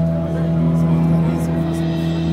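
Live band music played through a PA and heard from the audience: sustained chords held steady over a low drone, with crowd voices.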